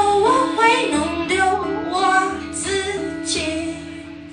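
A woman singing live to her own acoustic guitar accompaniment, a melodic vocal line over held guitar chords.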